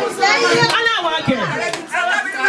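Several people's voices talking over one another, children's voices among them.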